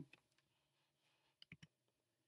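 Near silence broken by a few faint clicks about one and a half seconds in: a computer mouse clicking to advance a slide.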